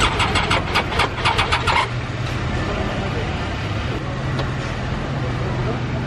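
Triumph Tiger motorcycle's starter chattering in a rapid, even run of clicks for about two seconds, then a steady low hum. This is the hot-engine no-start that the owner puts down to either a weak battery or a failing starter motor.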